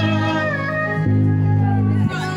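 Choir singing through microphones, holding long notes over a low sustained note that breaks off and starts again about a second in; a high voice slides down in pitch about half a second in.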